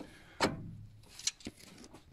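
A sharp knock about half a second in, followed by two lighter clicks.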